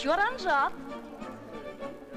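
A woman's voice sliding sharply up and down in pitch without clear words for under a second, then soft background music with violins.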